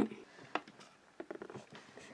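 Quiet pause with a few faint, short clicks and taps, one about half a second in and a small cluster past the middle.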